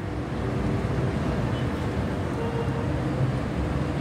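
Busy street ambience: a steady rumble of traffic with indistinct voices in the background.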